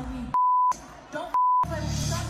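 Censor bleep: a steady single-pitch beep that cuts in twice, about a third of a second each, blanking out a woman's amplified voice on a concert stage. Between the beeps her speech through the PA and the venue sound come through.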